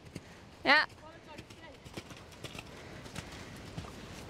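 Hoofbeats of a ridden horse cantering across a wet, muddy sand arena: faint, irregular thuds.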